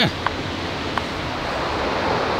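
Steady rush of surf from a nearby beach, with two light clicks under a second apart near the start.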